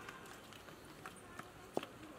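Footsteps of several people walking on a dirt and stone path, light scattered scuffs and taps with one sharper tap near the end, under faint voices.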